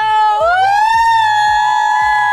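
A high voice holding one long cry that glides up and then holds steady on one note, over a music track with a steady drum beat of about three strokes a second.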